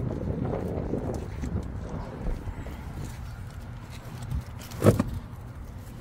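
Wind rumble on the phone microphone with handling rustle, and a single sharp knock about five seconds in.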